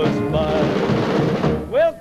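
Rock and roll band playing an instrumental passage over a steady drum beat. Near the end the singer comes back in with a rising slide into the next line.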